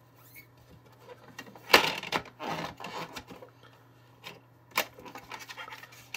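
Hands handling a plastic toy and fabric swatches: a sharp plastic click, then rubbing and scraping of fabric against plastic for about a second and a half, followed by a few scattered clicks as the lid is shut.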